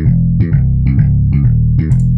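Sampled five-string slap bass (the 5String NewRock Slap preset in FL Studio's Flex plugin) playing a short programmed bass line: a quick run of plucked notes, about four a second.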